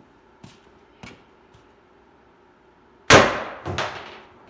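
A PepperBall VKS .68-calibre launcher fires one sharp, loud shot about three seconds in. A second, quieter hit follows under a second later as the round strikes the trap. A couple of faint clicks come before the shot.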